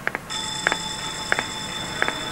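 A steady, high-pitched ringing tone made of several pitches at once, like an electronic alarm, starts about a third of a second in and holds, with a few short ticks scattered through it.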